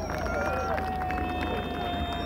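A public-address system at an outdoor rally, in a pause in the amplified speech. A thin, steady ringing tone sets in just after the start and holds at one pitch, over a low hum and faint voices in the background.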